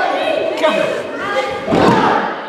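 A heavy thud near the end as a wrestler's body hits the wrestling ring mat, over crowd voices shouting in the hall.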